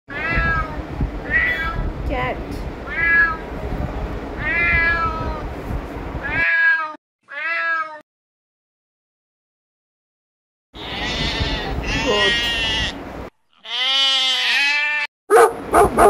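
Cats meowing over and over: a run of about five meows, two short ones, then a few seconds of silence before longer, louder meows. A couple of short, sharp, loud sounds come right at the end.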